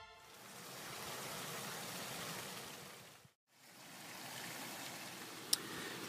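Faint, even hiss that swells and fades away over about three seconds. It drops out to silence for a moment, then returns as faint background hiss with a single small click near the end.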